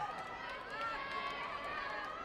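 Several voices calling out and talking over one another, with a few light taps mixed in.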